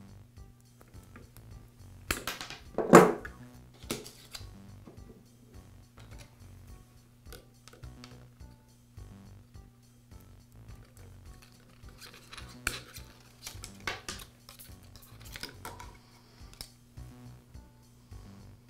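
Wire cutters snipping through plastic crimp connectors on a router's wiring: a series of sharp cuts and crunches, the loudest about three seconds in, with more snips at about four seconds and again through the last third, amid small handling clicks of the tool and wires.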